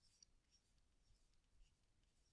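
Near silence: quiet room tone with a couple of very faint ticks.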